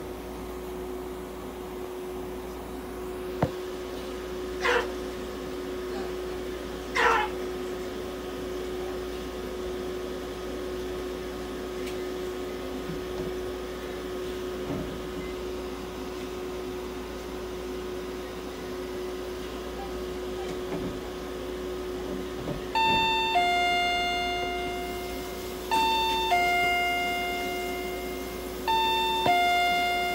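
Steady low electrical hum, with two short chirps about five and seven seconds in. From about twenty-three seconds an electronic two-note chime, high then low, sounds three times about three seconds apart, each note ringing on and fading.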